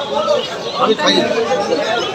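Several people talking at once: overlapping chatter in a crowd.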